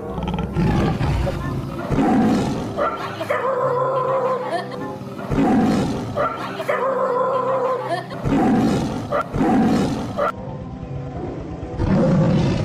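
Lion roars repeated over and over, about every one and a half to two seconds, played as a recording for the fake lion, with music underneath.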